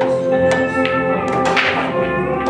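Background music playing over a pool shot: a few sharp taps of the cue tip striking the cue ball and the balls clicking on the table, with one in the first instant and several more over the next second and a half.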